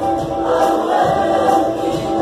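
Large choir of young men singing together, holding long notes.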